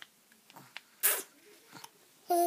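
A baby lets out one short, breathy, hissing burst about a second in, with a few faint soft clicks around it.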